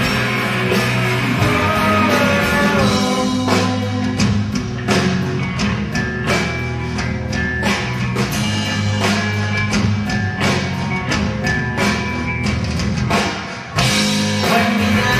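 Live rock band playing at full volume: electric guitars and bass over a drum kit. The drum hits come in hard and regular about three and a half seconds in, and the music dips briefly just before the end.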